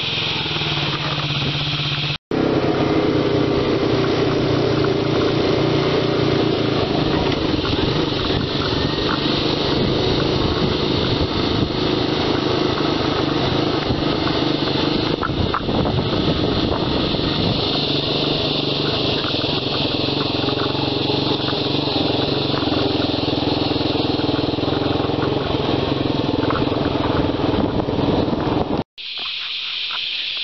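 A quad bike's engine running steadily as it is ridden across a paddock, with a brief cut a couple of seconds in and another near the end.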